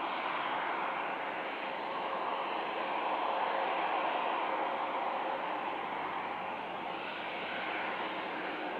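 Embraer E190's GE CF34 turbofan engines running at idle after pushback, a steady whooshing hiss with a faint steady whine that swells slightly midway.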